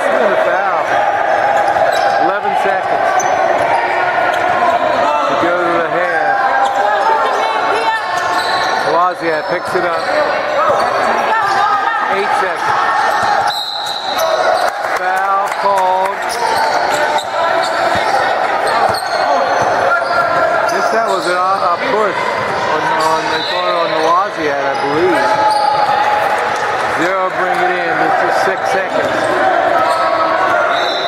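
Basketball game sound in a large gym: a ball dribbled on the hardwood floor over a steady mix of players' and spectators' voices, echoing in the hall.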